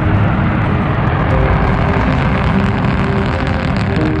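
Long March 4C rocket engines during ascent: a loud, steady rumble with its weight in the low end.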